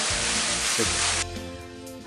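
Steady rushing hiss of a small waterfall falling into a pool. It cuts off suddenly about a second in, giving way to quiet background music with held tones.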